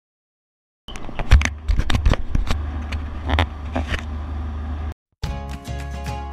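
Silence for about a second, then a moving car's low rumble with scattered clicks and knocks for about four seconds, cut off abruptly; music begins about five seconds in.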